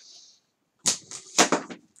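A sheet of paper and a plastic ruler being slid and repositioned on a wooden desk: two brief swishes, about a second in and half a second later.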